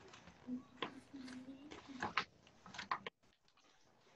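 A large sheet of paper rustling and crinkling as it is bent and handled, with a few sharp crackles, mixed with a child's faint brief vocal sounds. The sound drops out abruptly about three seconds in.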